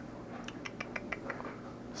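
A quick run of about ten faint, sharp clicks over roughly a second, starting about half a second in, over low background hiss.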